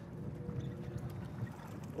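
Charter boat's engine running steadily at trolling speed: a low, even drone with a faint steady tone above it.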